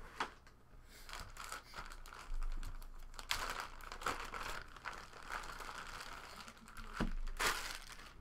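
A thin plastic bag crinkling and rustling as it is handled and lifted, with a few short clicks and knocks among the rustling.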